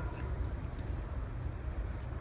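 Quiet ice-arena ambience: a steady low rumble with faint noise from a standing crowd.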